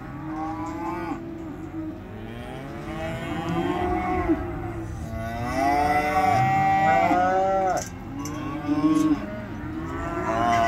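Several cattle mooing over one another, their calls overlapping, with one long drawn-out moo about halfway through. A few short sharp knocks are heard among the calls.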